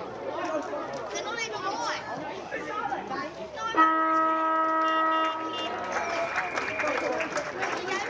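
A car horn sounds once, steady for about a second and a half, over spectators' chatter, greeting a goal. A thinner, higher tone follows briefly.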